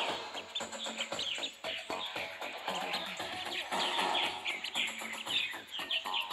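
A duckling peeping: many short, high, falling notes in quick succession, with music playing underneath.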